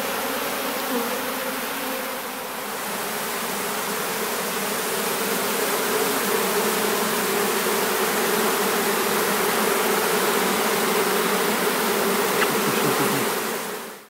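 Swarm of honeybees buzzing as they crawl off the cloth into their new hive: a steady, continuous hum that fades out at the very end.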